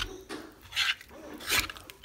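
A metal fork stirring thick cream cheese and cream of chicken soup in a slow cooker's crock, scraping against the pot. Two louder scraping strokes come in the second half.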